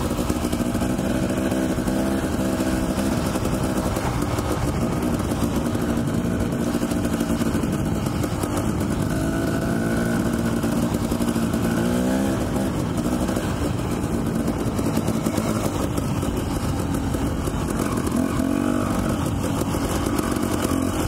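Dirt bike engine running at low trail speed, its pitch rising and falling with the throttle and a quick rev up and back about twelve seconds in, over steady wind and trail noise.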